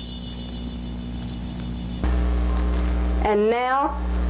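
Steady electrical hum with faint high steady tones, the hum stepping up louder about halfway through. A voice begins near the end.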